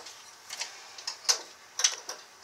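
A few sharp clicks and clacks from a Bowflex home gym's handles, cables and power rods, spaced roughly half a second apart, as the handles are released after a heavy rep.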